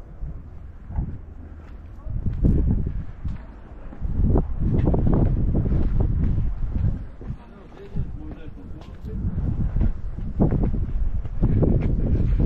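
Wind buffeting the microphone in uneven gusts, a low rumbling that swells and drops several times.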